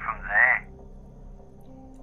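A thin, telephone-like filtered voice finishes a phrase with a rising syllable about half a second in, then only a low steady background hum remains.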